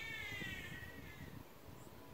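A faint animal call: one drawn-out cry, pitched high, that rises slightly and then falls and fades out after a little over a second.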